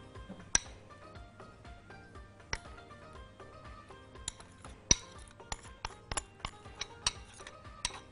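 A metal spoon clinking and tapping against a glass bowl as butter is scooped out: about a dozen sharp clinks, a couple early on, then coming quickly one after another in the second half. Faint background music underneath.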